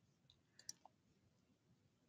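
Near silence: room tone, with a few faint short clicks a little after half a second in, the clearest about two-thirds of a second in.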